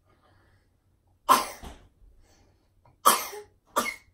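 A young child coughing: one cough about a second in, then two more close together near the end.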